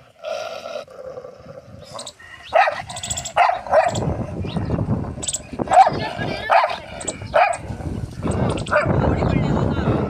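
Chained black-and-white dog barking in short, sharp bursts, about eight barks starting a couple of seconds in, with a low rumble on the microphone under the second half.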